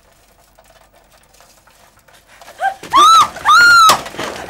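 A woman screams twice, two loud cries that rise and fall, as a man collides with her bicycle and knocks it over. A sharp crash comes at the end of the second scream.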